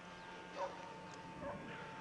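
A few faint, short animal calls about half a second apart, over a steady thin whine and low background hiss.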